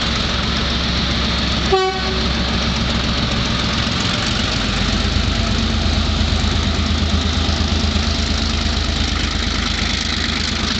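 EMD GR12 diesel-electric locomotive's twelve-cylinder two-stroke diesel working under power as it starts away with a passenger train. It grows louder, with a deep pulsing beat from about four seconds in. A short horn toot comes about two seconds in.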